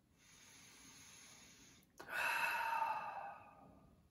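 A man taking a slow, deep meditation breath: a soft breath in lasting about two seconds, then a louder breath out that starts abruptly and fades away over a second and a half.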